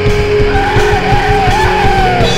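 Depressive black metal music: distorted guitars and fast drumming, with a high, wavering lead melody that bends downward near the end.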